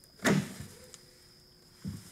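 A wooden door being opened: a sharp click from the knob and latch about a quarter second in, fading off, then a soft low thump near the end as the door swings in.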